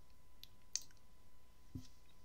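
A few faint, sharp clicks of a computer mouse, the loudest a little under a second in.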